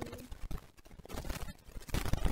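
Irregular clicks and knocks of small objects being handled: a makeup brush, a compact and a folding mirror case being picked up and moved, loudest near the end.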